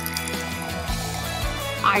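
Background music over a thin stream of water trickling from a watering can into a plastic flower pot. A voice starts near the end.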